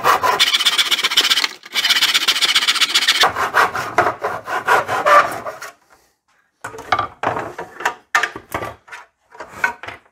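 Handsaw cutting through a wooden 1x2 held in a plastic miter box: rhythmic back-and-forth strokes, longer at first and then quicker and shorter as the cut finishes, about five and a half seconds in all. After a short pause come a few sharp clicks and knocks as the saw and wood are handled and set down.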